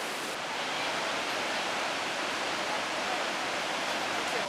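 Rushing river water heard as a steady, even hiss.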